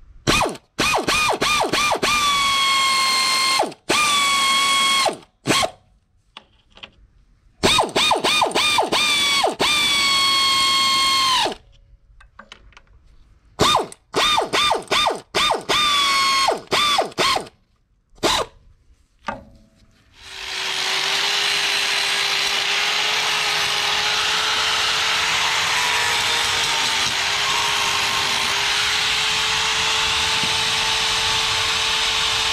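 Pneumatic ratchet run in short bursts on the bolts of a new water pump on a three-cylinder IH 533 tractor engine, its motor whine dropping in pitch as each bolt pulls tight. About two-thirds of the way in it gives way to a steady angle grinder running.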